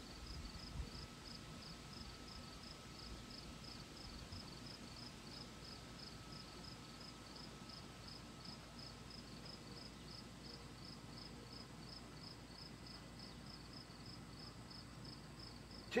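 Faint insect chirping, a high-pitched chirp repeated evenly about three times a second.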